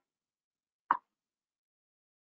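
A single short click about a second in.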